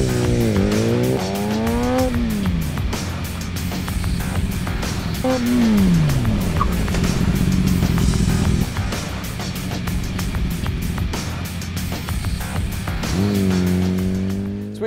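Kawasaki ZX-10R's inline-four engine revving up through a gear change, its note falling about five seconds in as the bike slows to a stop, then rising again near the end as it pulls away. A music track with a steady beat runs underneath.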